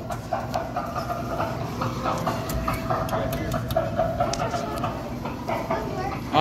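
Arcade ambience: a steady din of electronic game-machine sounds with held tones, scattered clicks and distant voices.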